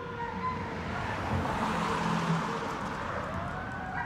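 A car driving along the street, its tyre and engine noise swelling through the middle and easing off, with a faint siren tone still sounding in the distance.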